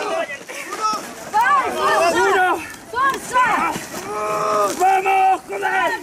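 Several people shouting encouragement in quick, overlapping calls during a tug-of-war pull.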